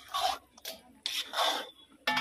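Metal spatula scraping across the bottom of a large metal kadai while stirring flour roasting in ghee: two long rasping strokes about a second apart, with a short scrape between them.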